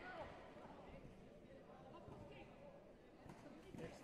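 Faint voices in a large sports hall, with a few short knocks near the end as the fighters kick and move on the mat.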